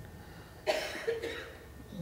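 A person coughing once, about two-thirds of a second in, trailing off into a short throat-clearing sound.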